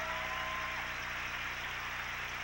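Studio audience applauding steadily, with a held musical tone that ends within the first second.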